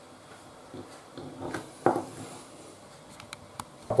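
Faint kitchen handling sounds over quiet room tone: a soft knock a little under two seconds in and a couple of light clicks near the end, as flaked dried salt cod is crumbled by hand over a metal baking tray.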